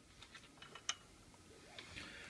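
A few faint, irregular clicks and taps of small plastic XT60 connectors being handled and set down on a workbench, with one sharper click about a second in.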